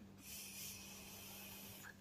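A draw on an Innokin Zenith mouth-to-lung vape tank with its airflow opened wide: a faint, steady airy hiss of air pulled through the tank, lasting under two seconds. The draw shows how loose a lung hit the tank gives with its airflow fully open.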